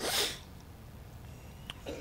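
A short, sharp breathy rush, like a quick breath or sniff drawn in at the pulpit microphone, lasting under half a second; then quiet room tone with a faint click near the end.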